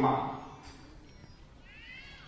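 A man's speech voice breaking off on one word with an echoing tail, then a pause holding a faint high gliding sound near the end.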